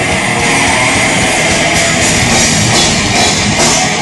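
Death metal band playing live: fast, dense drumming under distorted guitars, loud and unbroken.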